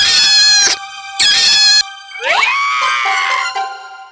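Cartoon dog character screaming in pain from an ant biting his nose: two short, loud, high-pitched screams, then a longer cry that sweeps up in pitch and trails away, over background music.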